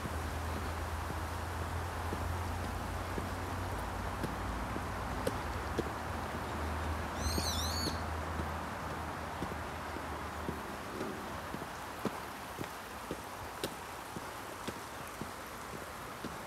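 Walking footsteps on an asphalt road over a steady outdoor rush, with a low rumble that fades after about ten seconds. A single short, wavering bird call sounds about seven seconds in.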